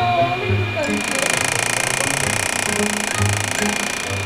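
EMSCULPT electromagnetic muscle-stimulation applicator firing a rapid, even train of pulses: a steady mechanical buzzing rattle that starts about a second in, the pulses driving strong muscle contractions in the buttocks. Background music plays underneath.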